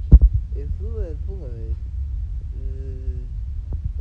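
A man's mumbled, wordless complaining, his speech slurred by a numb tongue and swollen lip from local anaesthetic after a wisdom tooth extraction, over a low steady rumble. A sharp thump comes at the very start, and background music with held notes comes in about two-thirds of the way through.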